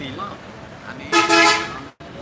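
A vehicle horn honks once for about half a second, loud and steady, over the murmur of voices; the sound cuts off abruptly just before the end.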